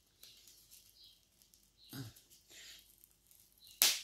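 Paper being handled: a stamped piece of envelope rustling faintly between the fingers, with a soft thud about halfway and a sharp, brief crackle of paper just before the end.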